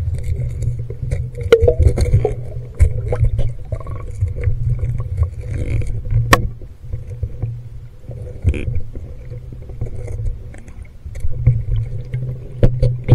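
Underwater handling noise from a handheld camera housing rubbing and knocking against a diver's suit and gear. It sits over a steady low rumble, with scattered sharp clicks, the sharpest about six seconds in.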